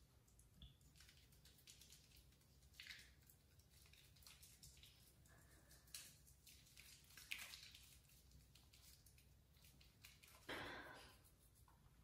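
Near silence, with faint soft squishing as lathered fingertips rub foaming face cleanser over the skin, a few brief swishes scattered through.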